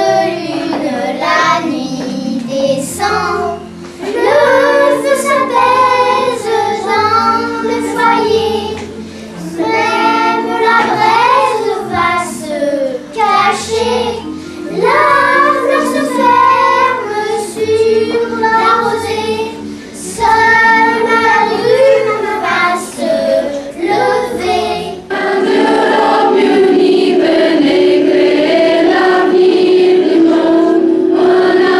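A small group of young children singing a song in French together, phrase by phrase with short breaks between lines. About five seconds before the end it changes to a larger choir of teenage girls and young women holding longer, steadier notes.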